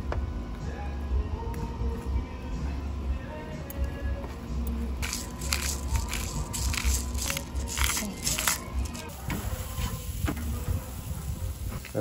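Hand-held pepper mill grinding black pepper: a run of short crunchy grinding strokes starting about five seconds in and lasting about four seconds, over background music.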